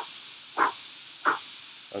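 A man imitating a hawk's flapping wings with his mouth: a run of short, breathy whooshes about two-thirds of a second apart.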